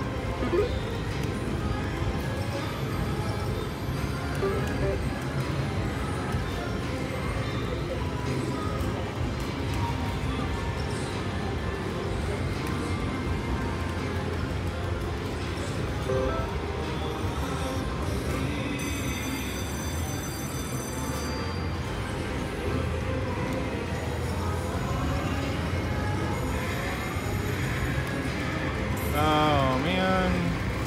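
Aristocrat Wonder 4 slot machine spinning repeatedly with no win: electronic reel sounds and music over steady casino floor noise. A brief high ringing chime sounds about two-thirds of the way through.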